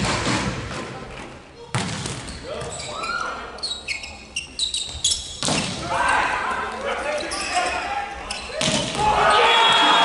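Indoor volleyball being played in a large hall: sharp ball hits, three of them loud, with crowd voices and cheering between.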